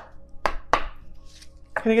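A deck of oracle cards handled and shuffled by hand, with two sharp card slaps in the first second, over soft background music.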